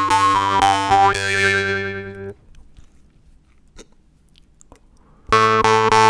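Steel jaw harp (vargan) being played: a steady low drone plucked in a quick, even rhythm, with a melody picked out in the overtones above it. The playing breaks off about two seconds in, leaving a pause with a few faint clicks, and starts again near the end.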